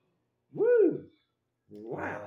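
A man's voice giving a single drawn-out "ooh" that rises and falls in pitch, lasting about half a second, followed near the end by the start of more talk.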